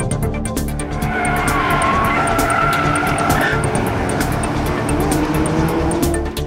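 Car tyres squealing through a corner at track speed, a wavering high squeal over a running engine whose note rises near the end.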